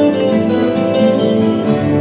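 Live band music in an instrumental gap between sung lines, with a guitar strummed over sustained accompanying chords.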